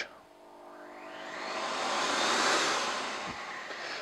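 Numatic NDD 900A vacuum extractor switched on: the motor runs up, with a rush of air building over about two seconds, then easing off somewhat near the end.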